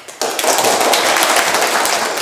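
Audience applauding: many hands clapping in a dense, loud run that starts abruptly just after the start.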